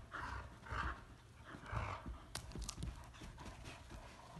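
Dogs tugging on a rope toy, huffing and panting in short noisy breaths, with a few sharp clicks near the middle.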